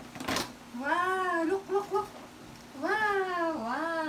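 A one-year-old's wordless high-pitched vocalising: two drawn-out squealing calls that rise and fall in pitch, about a second in and again near the end, with a brief rustle of a paper gift bag at the start.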